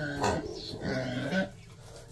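Pot-bellied pig grunting softly a few times, the sounds dying away about halfway through.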